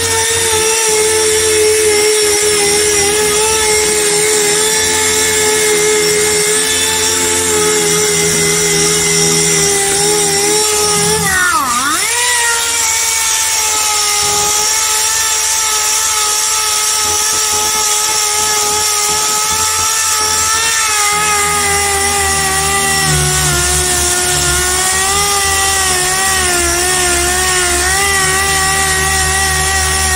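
Air-powered random-orbital sander running with a steady high whine while sanding hard, paint-soaked wooden truck-bed boards. About twelve seconds in its pitch dips sharply and climbs back, and later it wavers up and down as the pad is worked over the wood.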